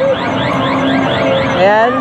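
Arcade game electronics playing a fast repeating rising chirp, about six a second, over steady machine tones; a voice comes in near the end.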